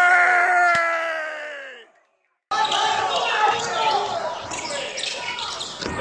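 A horn sounds one long blast that slowly falls in pitch and fades out about two seconds in. After a brief dropout there is a jumble of crowd voices and shouting in the gym, and the same falling horn blast starts again at the very end.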